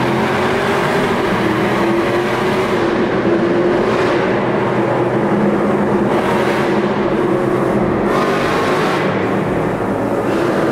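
Dodge Charger 392 Scat Pack's 6.4-litre HEMI V8 running steadily at highway speed, heard from inside the cabin while driving through a road tunnel.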